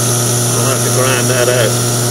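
A steady machine hum runs throughout, with a brief murmur of a voice in the middle.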